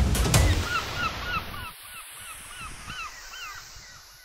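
Drum-led music hits once or twice at the start and fades. A flock of birds calls over it, short gliding calls at about four a second, dying away near the end.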